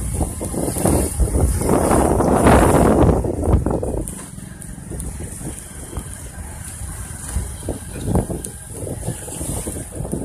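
Wind buffeting the microphone over the rumble of a moving vehicle, heavy for about the first four seconds and then easing to a lower, steady rumble.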